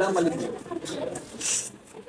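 Mostly speech: a spoken word trails off at the start, then low, murmured voices continue, with a short hiss about a second and a half in.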